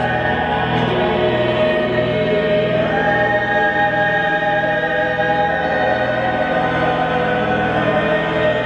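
Mixed chamber choir singing a Kyrie in long held chords over steady low organ notes, the harmony shifting about three seconds in. The voices ring in a reverberant cathedral.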